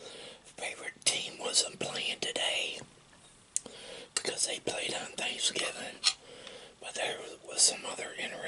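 A man whispering close to the microphone, with a single sharp click of cutlery against the plate about three and a half seconds in.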